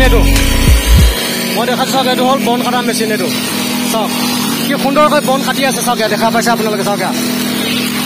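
Petrol brush cutter's engine running at a steady high speed while its nylon-line head cuts grass. Background music with a rapped vocal plays over it, its heavy bass beat dropping out about a second in.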